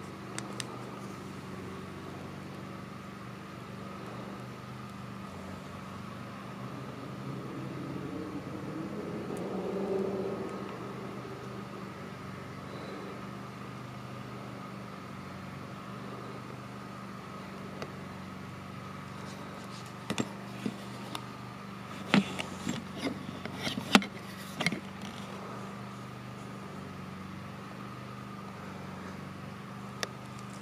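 A steady low mechanical hum runs throughout. A faint low sound swells and fades about ten seconds in. A cluster of sharp clicks and knocks comes about twenty to twenty-five seconds in.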